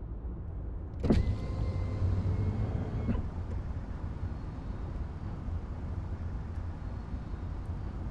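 Low steady rumble inside a moving car's cabin. About a second in, a power window motor starts with a click and runs with a steady whine for about two seconds, then stops with another click. This is a window being opened after a smell in the car.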